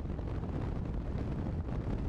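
Steady low wind rumble on the microphone of a motorcycle riding at highway speed, with the bike's running noise underneath.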